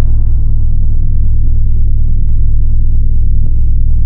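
Logo sting sound design: a loud, deep, steady drone with a thin high whine held above it and a couple of faint ticks.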